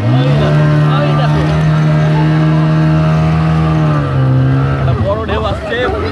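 Outboard motor of an inflatable speedboat revving up under throttle, then running at a steady high pitch for about four seconds before easing down and fading about five seconds in. Voices come in near the end.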